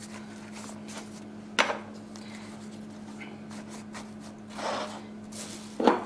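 Lavash sheets handled and pressed into a metal springform pan: quiet rustling, with one sharp knock about one and a half seconds in and a softer rustle near the end, over a faint steady hum.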